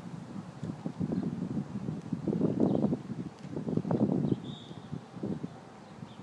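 Gusts of wind buffeting the microphone, strongest in the middle and dying down near the end.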